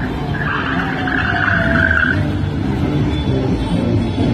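Vintage cars and a military jeep driving past in street traffic, engines running, with a high, hissing squeal lasting about two seconds near the start.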